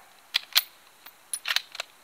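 Bolt of a Ruger M77 Gunsite Scout .308 rifle being worked between shots, ejecting the spent case and chambering the next round: two sharp clicks, then a quick cluster of three or four clicks about a second later.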